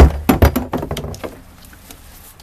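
Knocks and clatter of a plastic recycling bin and the plastic bottles and wrappers in it being handled over a garbage can. The loudest knocks come at the start and about half a second in, and the clatter dies away after about a second and a half.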